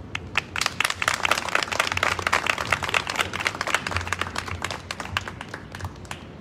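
A crowd applauding: many separate hand claps start about half a second in, build to a steady patter, and thin out near the end.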